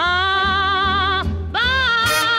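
A female singer holds a long note with vibrato over a small swing band with a pulsing bass, breaks off briefly, then slides up into a new note near the end.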